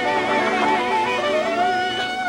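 Live soul band playing an instrumental stretch: guitar under long held notes that waver slightly in pitch, with no lead vocal.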